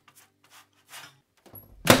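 Fingers handling a dried papadum on a wire rack: a few faint rubbing scrapes over a low steady hum. Music and a voice start near the end.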